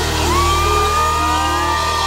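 Live band music playing out under a steady low bass, with audience members letting out whoops that rise in pitch about a quarter-second in and are held.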